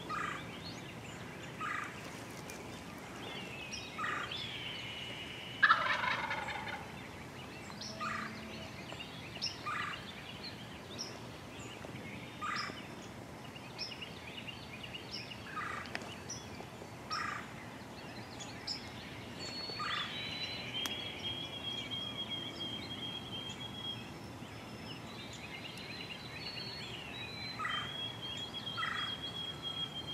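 Wild turkey gobbler gobbling, the loudest call about six seconds in, among short bird calls repeating every second or two and a few long, steady, high trills from songbirds.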